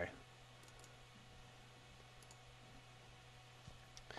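Near silence with a faint steady low hum and a few faint computer mouse clicks, two quick pairs like double-clicks, opening the temperature graph full screen.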